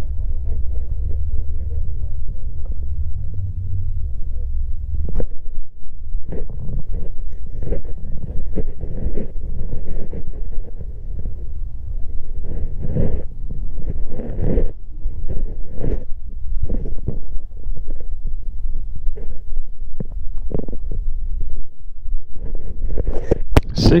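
People talking in the background over a low rumble, which grows fainter about five seconds in as short irregular sounds take over.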